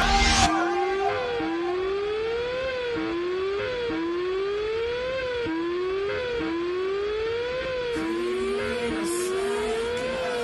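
Siren-like wail in a slowed-and-reverbed pop track, over and over gliding up in pitch and dropping back, about once a second, with no beat underneath.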